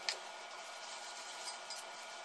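Faint rubbing and light scraping of a spoon spreading cream inside a plastic cup, over a low steady hiss.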